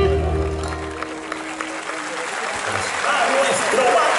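A live band's closing chord held and then dying away about a second in, followed by an audience applauding.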